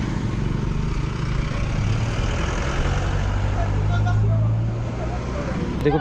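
Road traffic passing close by: a vehicle engine's steady low hum, strongest in the middle, over a wash of road noise.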